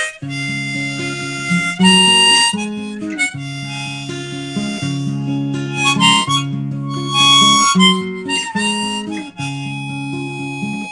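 A harmonica in a neck rack playing short melodic phrases, coming in several bursts, over steadily strummed acoustic guitar chords played with a capo.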